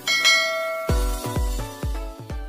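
A bright bell-like notification chime rings out at the start, and about a second in electronic music begins with a steady kick-drum beat, about two strokes a second.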